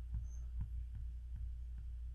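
A low steady electrical hum with faint, soft clicks every few tenths of a second, made as squares are clicked onto the page one after another.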